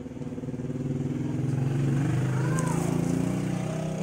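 An engine running, growing louder over the first two seconds and then holding steady.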